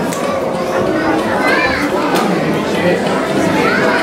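Indistinct chatter of an audience in a large hall, many overlapping voices including children's, with no single clear speaker.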